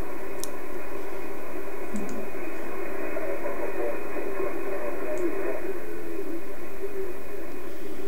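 Shortwave receiver audio in upper sideband on the 6 MHz HF aeronautical band: steady hiss and static, sharply cut off above about 2.7 kHz by the receiver's filter, with faint wavering tones of a weak signal underneath. A few faint clicks come through over it.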